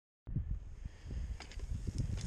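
Silence, then from about a quarter second in, wind rumbling and buffeting on an outdoor camera microphone, with a few faint ticks or rustles.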